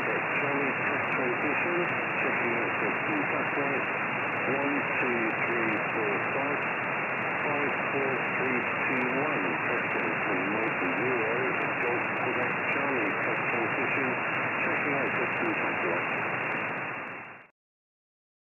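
Single-sideband voice received off the QO-100 satellite's downlink on a Flex 6600 software-defined radio: a weak voice half-buried in steady, narrow-band static, cutting off suddenly near the end. The signal is weak because long coax run on the 2.4 GHz uplink loses much of the transmit power.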